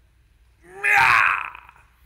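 A man's loud, breathy groan-like vocal exclamation, under a second long, about halfway through.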